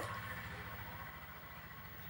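A faint, steady low hum, like a small machine running, slowly fading, with a thin steady high tone above it.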